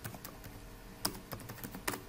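Computer keyboard keystrokes, faint and irregular, as a command is typed out and entered, with one louder key click about a second in.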